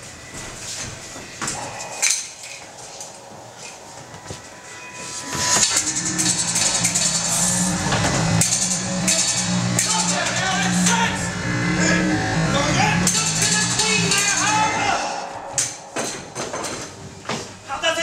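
Stage fight scene heard through a camera microphone in the audience: music and voices with many sharp clicks and clashes, loud from about five seconds in until about fifteen seconds in. It is quieter with scattered clicks before and after.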